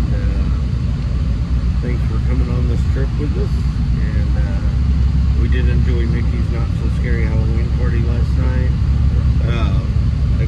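Steady low rumble of a coach bus's engine and tyres heard from inside the cabin while it drives along a highway.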